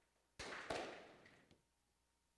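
Two dull thuds about a third of a second apart, trailing off over about a second, then a faint tick, against near silence.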